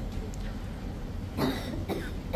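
A person coughs once, sharply, about one and a half seconds in, over a low steady room hum.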